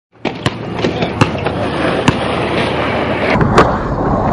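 Skateboard wheels rolling on an asphalt court, with a string of sharp clacks from the board, and a louder pop about three and a half seconds in as the skater ollies.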